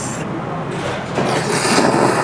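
A person slurping ramen noodles, one noisy slurp of about a second in the second half, over a steady background hum.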